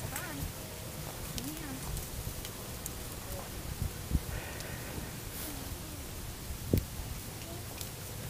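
A pony's hooves and people's footsteps walking slowly on a soft dirt path, over a steady low rumble, with faint voices in the background. Two louder thumps stand out, one about halfway through and one near three-quarters through.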